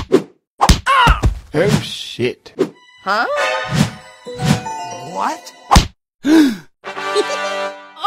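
Cartoon sound effects: a quick run of whacks and thuds mixed with short sliding comic vocal sounds. Near the end it goes into a held musical sting.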